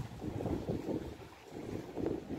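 Wind buffeting the microphone: an uneven, gusty rumble that eases off briefly about a second and a half in.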